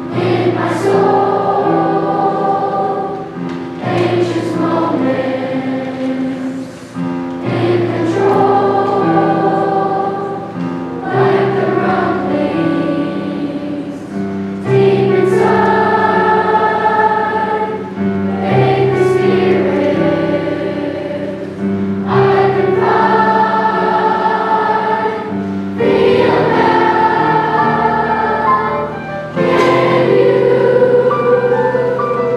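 Mixed children's choir singing in harmony with electric piano accompaniment, in phrases of about four seconds each.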